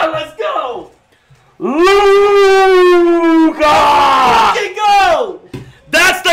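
Men yelling wordlessly in celebration of a game-winning shot. A short shout comes first, then a long held yell of about two seconds that sinks slightly in pitch, followed by another loud yell that falls away.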